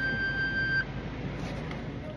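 The last long-held high note of a tune on an English concertina, one steady reed tone that stops abruptly about a second in. It is followed by a few faint clicks and rustles as the player moves the instrument and gets up.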